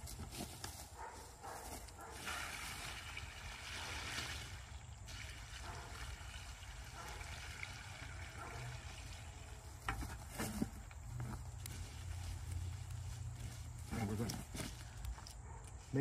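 Water poured from a plastic bucket onto a mound of wood chips: a steady splashing pour lasting several seconds.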